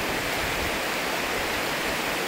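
A fast river running over rocky rapids: a steady, even rush of white water.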